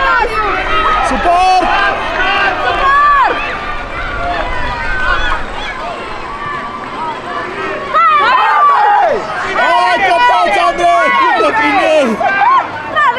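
Many high-pitched children's voices shouting and calling over one another during a youth rugby game, with adult voices among them. The shouting eases off mid-way, then grows louder again about eight seconds in.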